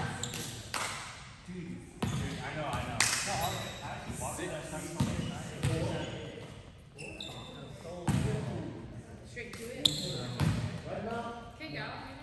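Players' voices echoing in a large gym, broken by several sharp hits of a volleyball, each followed by a short reverberant ring.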